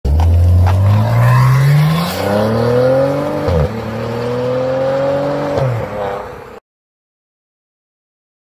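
A car engine accelerating hard through the gears: its pitch climbs, drops sharply at an upshift about three and a half seconds in and again about five and a half seconds in, then climbs again before cutting off suddenly.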